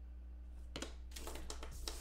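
Trading cards and plastic card holders being handled on a table: light clicks and rustles that start just under a second in and come more often toward the end, over a steady low hum.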